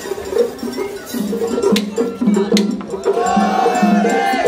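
Festival hayashi music played on the floats: a small hand gong clanging in a quick, repeating rhythm, with sharp drum strokes. A long held note comes in about three seconds in.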